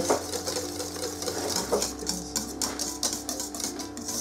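Wire balloon whisk beating warm honey cake batter in a stainless steel bowl, its wires clicking rapidly against the metal as baking soda is stirred in. Soft background music with steady tones runs underneath.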